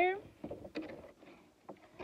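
Clear plastic clamshell food container being handled, giving a few light, scattered clicks and crackles as a potted moss is set inside it.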